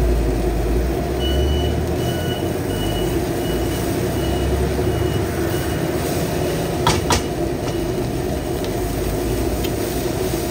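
Fried rice stir-frying in a steel wok with a wooden spatula over a gas burner, with a steady burner noise underneath and two sharp knocks about seven seconds in. A high electronic beeping, about two beeps a second, runs from about a second in until about six and a half seconds.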